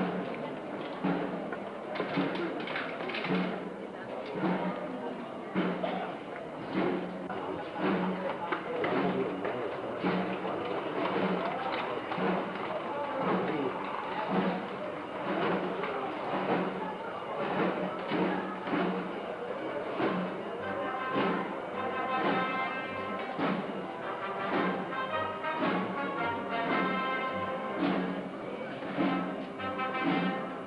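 Procession band playing a slow march: a steady, regular drum beat, with melody instruments joining in about two-thirds of the way through, over the voices of a crowd.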